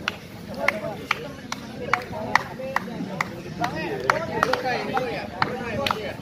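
Sharp clap-like clicks repeating at a steady beat, a little more than two a second, over the voices of a group of people talking.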